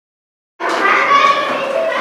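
Children talking and calling out, several high voices at once, starting suddenly about half a second in.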